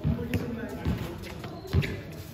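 A basketball bouncing on a concrete court: a few dull thuds spread over two seconds, with players' voices in the background.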